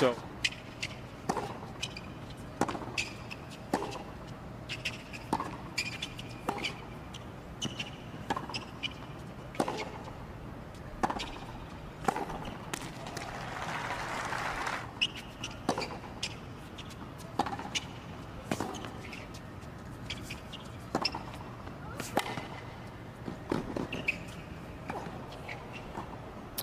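Tennis ball being struck by rackets and bouncing on a hard court, heard as sharp knocks about a second apart, with a short spell of crowd applause about halfway through.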